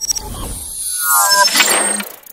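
Electronic intro sound effects: a sudden burst of glitchy static that swells in loudness, with a cluster of falling synthetic sweeps about a second in.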